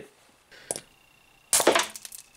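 Estwing hammer striking a marble-sized iron concretion on a concrete floor to shatter it: a faint tap under a second in, then one hard, sharp blow about a second and a half in.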